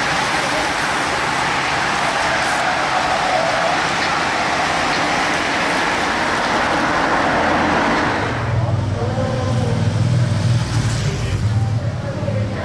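A road-race bunch and its following team cars go by in a dense, steady rush of tyre and engine noise, mixed with voices. About eight seconds in, this gives way to the low, steady drone of a race escort motorcycle's engine.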